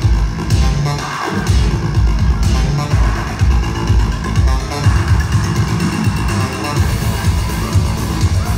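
Loud electronic dance music with a heavy pulsing bass beat, played live by a DJ over a club sound system. The bass drops out briefly about a second in, then the beat comes back.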